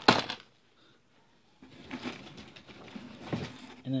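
A sharp knock at the start, then rustling and light knocks of packaged groceries being handled and pulled from a cardboard shipping box.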